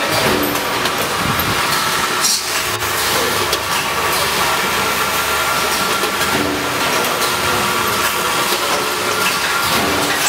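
Steady running noise of an automatic food packaging line, its motors and conveyors running together with a faint hum and a couple of brief clicks a few seconds in.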